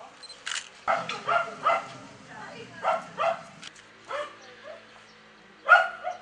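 A small dog yapping in short, sharp barks, about seven in uneven groups of two or three. A camera shutter clicks about half a second in and again near the end.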